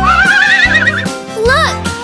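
A horse whinnying, a high wavering call in the first second followed by shorter rising-and-falling calls, over bouncy children's song backing music with a steady beat.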